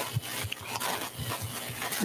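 Room noise of a large meeting hall during a pause in a talk: a steady hiss with a few faint, short, low sounds.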